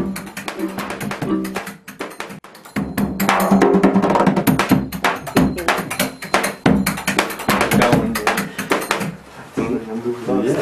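Live music: a guitar being played, then, after a cut about two and a half seconds in, a large drum with a cloth damper on its head struck by hand in a quick rhythm.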